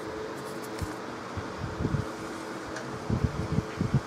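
Steady mechanical fan hum with faint steady tones in it, broken by a few dull low thumps, most of them bunched together near the end.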